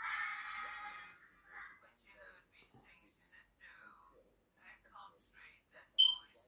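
A man's speech played through a television speaker, faint and thin, heard across the room. A steady buzzing band stops about a second in, and a short sharp high beep sounds at the very end.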